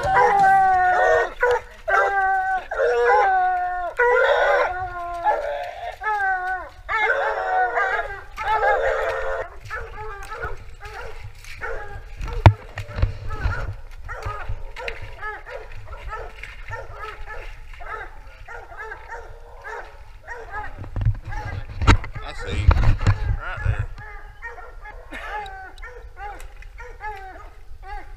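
A pack of coonhounds barking treed at the foot of a tree, the hounds' sign that they have a raccoon up it; the barking is loudest and most continuous for the first ten seconds, then thins out and grows fainter. Heavy thumps and rustling from the moving camera come through about twelve seconds in and again near the end.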